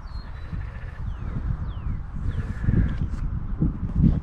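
Wind buffeting the microphone with a low rumble, while a bird gives three short falling whistled calls, about one, two and two and a half seconds in.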